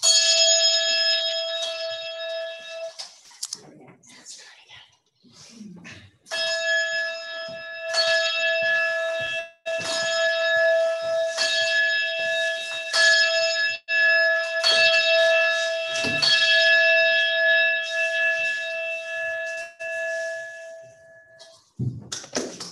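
Brass singing bowl, struck once with a ringing note that fades over about three seconds. After a pause it is sounded again and sung steadily at an even level for about fifteen seconds, then stops suddenly near the end.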